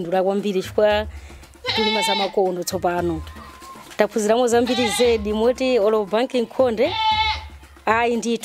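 Goats bleating a few times with quavering calls behind a woman speaking.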